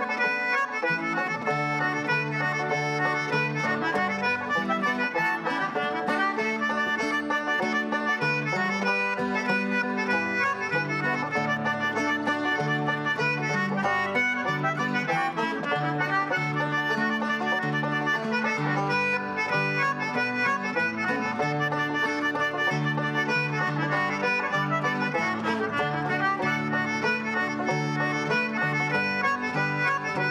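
Irish reel played at a steady dance tempo by a small traditional band: a squeezebox carries the tune over guitar and banjo.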